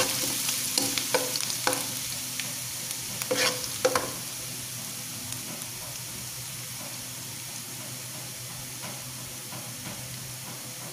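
Chopped ginger and onion sizzling in hot oil in a nonstick wok, with a slotted spatula stirring and knocking against the pan several times in the first four seconds; after that only a steady frying hiss.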